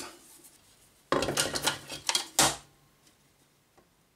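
Laser-cut wooden box parts being handled and knocked together on a workbench: a quick run of clacks and clatters starting about a second in, ending with a louder knock.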